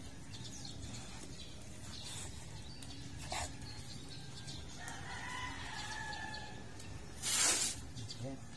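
A rooster crowing once, a drawn-out call about five seconds in, over a steady low background hum. Near the end comes a short, loud burst of noise.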